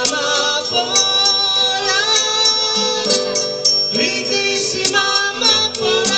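Live acoustic music: a woman singing a melodic line into a microphone over acoustic guitar, with light percussive clicks.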